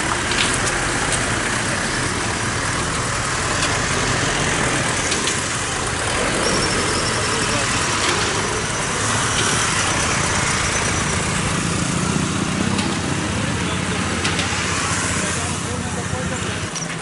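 A vehicle engine running at low speed amid steady street noise, with indistinct voices in the background.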